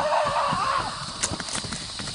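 A horse's long, loud, wavering cry ends under a second in. Soft hoof thuds follow as the horse walks.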